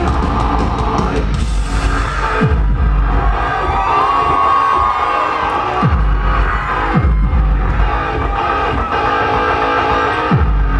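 Live band playing loudly through a club's sound system, heard from among the audience, with heavy bass and low notes that slide steeply down in pitch several times.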